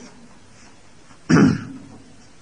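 A man gives one short cough, clearing his throat, about a second and a half into an otherwise quiet pause in his talk.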